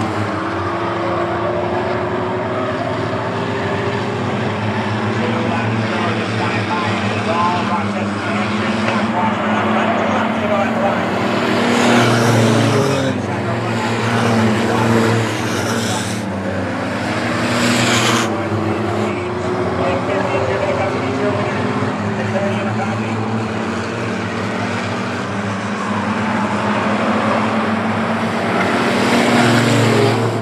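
Small short-track stock cars racing around an asphalt oval, their engines running hard and rising and falling in pitch as they lap. The sound swells as cars pass close by, loudest around twelve seconds in and again around sixteen to eighteen seconds.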